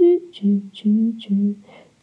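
A voice humming a slow tune in a few held notes, stepping between a lower and a higher pitch.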